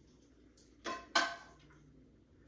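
Two quick clanks of a cooking pan being handled to strain the grease off cooked meat, about a third of a second apart; the second is louder and rings briefly.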